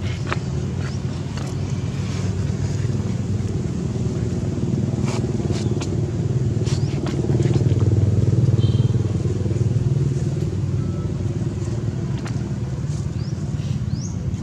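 A motor vehicle engine running steadily, its low hum growing louder about eight seconds in and then easing off, with scattered light clicks over it.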